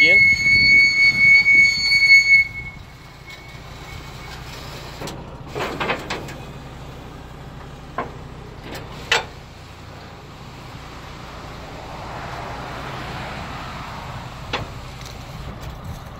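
Car-carrier truck's hydraulic deck retracting: a loud high-pitched squeal for about two and a half seconds as the sliding deck section goes back in. It is followed by the steady low hum of the truck's engine running the hydraulics, with a few sharp clicks.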